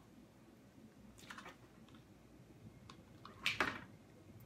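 Faint handling sounds of small felt craft pieces being worked with hot glue at a table: a few soft clicks and rustles, with one louder rustle about three and a half seconds in.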